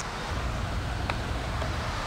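Steady low outdoor background noise, with one faint, short click about a second in: a putter tapping a mini golf ball lying against a rock.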